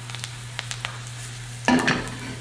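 Sliced ginger frying in hot peanut oil in a stainless steel skillet over a gas flame on medium-high heat: a steady sizzle with small scattered crackles and pops, the ginger browning. A short, louder burst of noise comes near the end.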